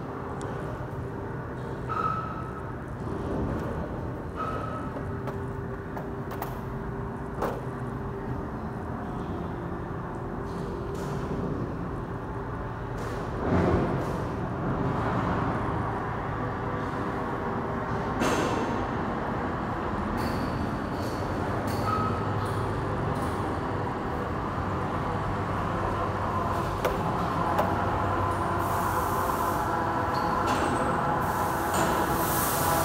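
Steady rumble and hum of a running vehicle, with scattered clicks, a few short squeaks and a louder knock about halfway through.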